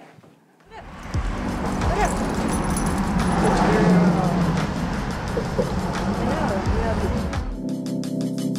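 Outdoor street noise with a heavy low rumble, passing road traffic and faint, indistinct voices. Background music with a beat starts about half a second before the end.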